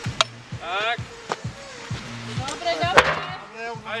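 A heavy tractor tyre slaps down on asphalt twice as it is flipped, the louder landing about three seconds in. Background music with a steady beat and shouting voices run throughout.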